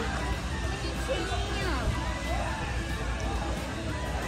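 Party background of music playing under the faint chatter of people talking.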